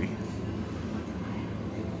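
Steady low hum of supermarket refrigerated display cases and store ventilation, an even drone with no breaks.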